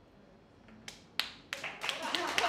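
About a second of near silence, then a few scattered hand claps that quickly thicken into audience applause near the end.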